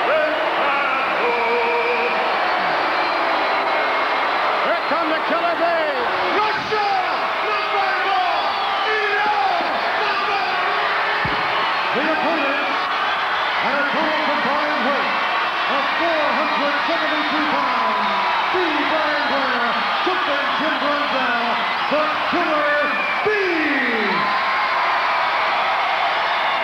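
Large arena crowd making a steady din throughout, full of shouts, yells and whoops that rise and fall in pitch.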